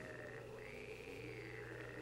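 Faint night-forest background ambience: a steady high tone that swells and falls in arcs about every second and a half, over a low hum.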